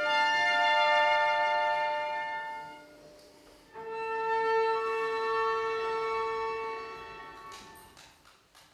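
A violin and cello duo playing long held notes. The first phrase fades away about three seconds in, and after a brief pause a second phrase begins and dies away near the end.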